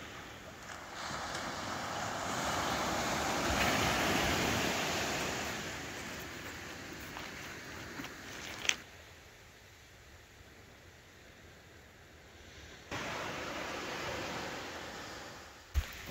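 Ocean surf washing onto a sand-and-pebble beach, swelling to a peak and fading over several seconds. A sharp click comes about nine seconds in, after which the surf is faint, then it returns at a steady level near the end.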